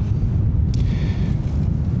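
Wind buffeting an outdoor microphone: a steady low rumble.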